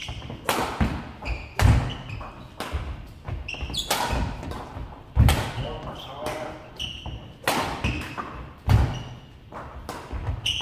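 Badminton drill: a racket smashing and killing shuttlecocks, with heavy landing thumps of fast footwork on a wooden hall floor every second or so. Short squeaks of court shoes come between the hits.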